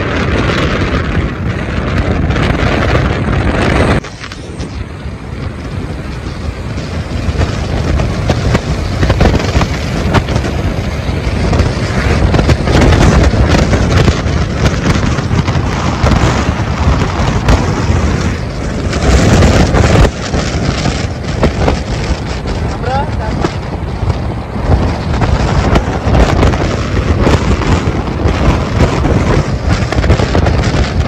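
Indistinct voices over a loud, steady low rumble, with an abrupt drop in level about four seconds in.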